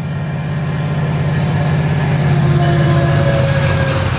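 Caltrain commuter train passing: a steady low rumble that swells to its loudest about three seconds in, with a few faint thin whining tones above it.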